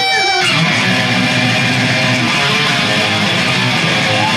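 Live thrash band playing loud: distorted electric guitar over bass and drums. A held note in the first half-second gives way to the full band coming in dense and heavy.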